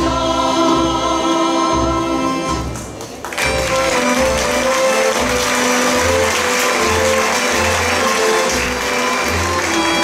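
Women's choir holding long sustained chords with a folk band behind it. About three seconds in, the singing ends, and the band goes on into a livelier passage over a steady, pulsing double-bass beat.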